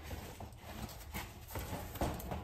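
Cardboard boxes being handled and moved, giving irregular short knocks and scuffs about every half second.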